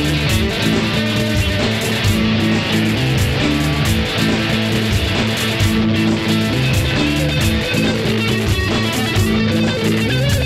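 Electric cigar box guitar played as an instrumental passage, plucked and strummed riffs with no singing, over a steady foot-stomped percussion beat.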